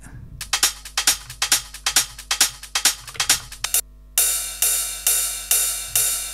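Techno percussion loop playing back from a DAW: quick, clicky hi-hat and percussion hits, then, about four seconds in, louder open hi-hat or cymbal hits come in about twice a second. A low steady hum sits underneath.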